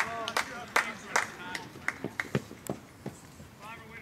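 Spectators' voices calling out indistinctly, with scattered sharp clicks; it quietens after about two seconds.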